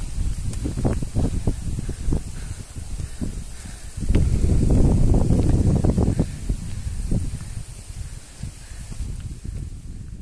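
Gusty wind buffeting the microphone in irregular low rumbles, strongest for about two seconds near the middle.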